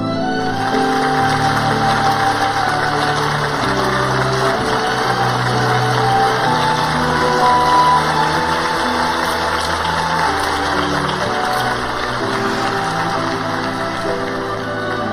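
Banquet audience applauding, an even patter of many hands, under slow background music of long held notes.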